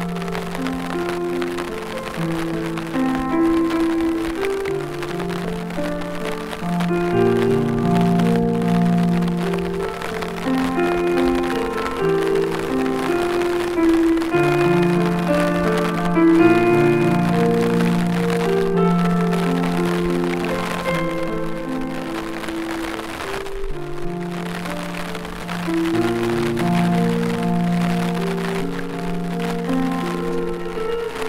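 Slow piano music with long held notes over a steady patter of rain.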